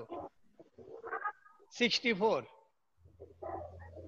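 A short vocal sound that rises and falls in pitch about two seconds in, after fainter ones near the start, then a steady low hum from about three seconds in.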